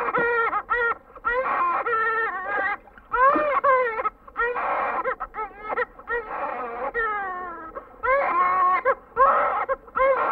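Infant crying: a series of high-pitched wailing cries, each well under a second to about a second long, several trailing off with a falling pitch.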